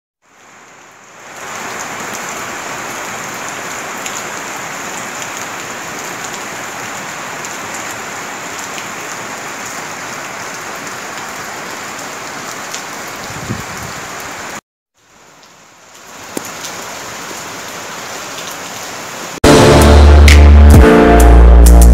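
Steady rain falling, with a brief break about three quarters of the way through before it resumes. Loud music with a heavy beat cuts in at the very end.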